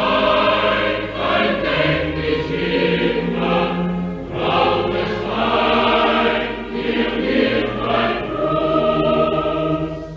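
A choir sings a slow, full passage with orchestra in phrases that swell and fall. This is a 1941 recording with little treble, dull and narrow in sound.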